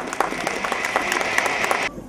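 Audience applauding, many hands clapping at once, cutting off suddenly near the end.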